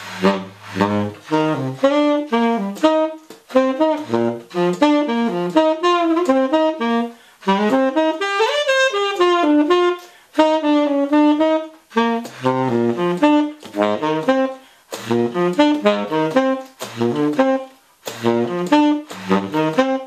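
Martin tenor saxophone with a Drake "Son of Slant" 7L mouthpiece and a Rico Royal #3 reed, played solo in improvised jazz phrases: quick runs of notes broken by short breaths, reaching down to low notes at the start. About eight seconds in a run climbs and falls, followed by a longer held note.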